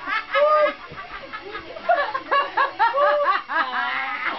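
Women laughing: strings of short, high-pitched laughs that come in quick repeated bursts, thickest in the second half.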